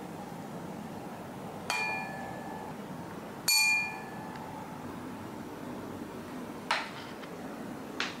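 Gold metal tuning fork with cylindrical weights on its prongs, struck twice and ringing with several steady tones that die away over about a second, the second strike louder. Near the end comes a single short, sharp click with no ring.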